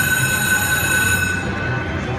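Aristocrat slot machine's electronic jackpot ringing, a steady high tone that signals a handpay lockup, cutting off about a second and a half in and leaving the low din of the casino floor.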